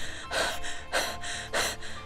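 Voice-acted heavy panting: three breathy exhales about half a second apart, a performance of exhaustion from the heat.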